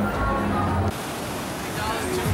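Music with voices under it, cut off abruptly about a second in and replaced by the steady wash of ocean surf breaking on a beach.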